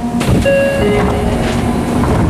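Subway car passenger doors sliding open at a station stop, a short rush of noise followed by a brief descending chime.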